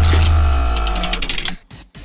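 Short musical transition sting: a sudden deep bass hit with a held chord of steady tones, fading out after about a second and a half.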